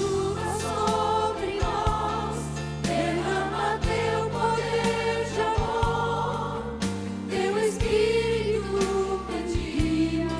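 A woman and two children singing a Christian song together through microphones, over an instrumental accompaniment whose held low chords change every second or two.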